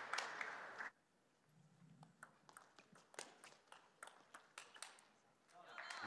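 A table tennis ball clicking faintly off the bats and the table at uneven intervals during a rally. It follows a short burst of crowd noise that cuts off about a second in.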